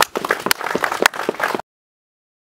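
Audience applauding with quick, irregular claps. The sound cuts off abruptly about one and a half seconds in, leaving dead silence.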